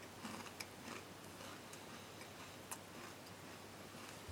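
A handful of faint, irregular clicks and light scrapes from small objects being handled, over a steady low hiss with a faint hum. No pitched notes are heard.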